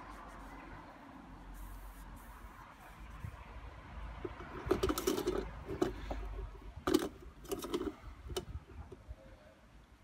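Engine oil dipstick being handled: pulled up through its metal guide tube and wiped on a cloth rag, giving a cluster of short clicks, taps and scrapes around the middle, over a low rumble.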